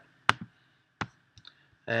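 Computer mouse clicking: two sharp clicks about two thirds of a second apart, with a few faint ticks after.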